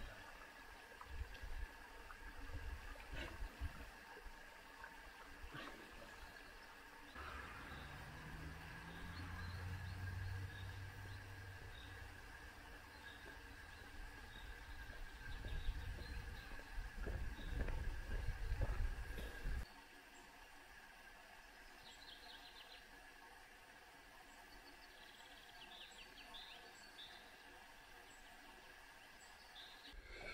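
Faint summer woodland ambience: a steady high insect drone and a few short bird chirps. Uneven low rumble, like wind or handling on the microphone, runs through the first two-thirds and stops suddenly, leaving a quiet stretch.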